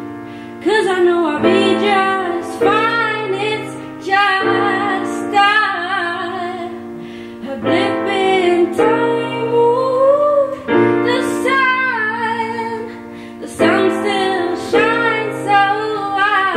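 A woman singing a slow melody while accompanying herself on a grand piano; her held notes glide up and down over piano chords struck every second or two.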